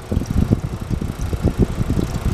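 Antique Westinghouse vending-machine condensing unit running on its run cycle: the sealed compressor and its condenser fan, an uneven low rumble with many irregular knocks and rattles.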